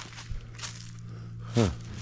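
A steady low hum with a faint rustle or two, then a man's short "huh" near the end.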